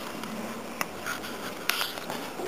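Handheld camera handling noise: a steady rustle and scrape with one sharp click a little before halfway and a few brief faint scrapes near the end.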